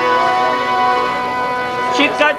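Harmonium holding a steady chord of many sustained tones.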